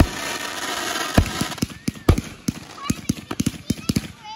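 Fireworks going off: aerial bursts with loud bangs about a second and two seconds in, then a rapid run of crackling pops near the end.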